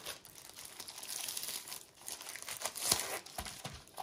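Crinkling of a clear plastic sleeve and a rolled diamond-painting canvas as they are handled and unrolled, with a few sharper crackles near the end.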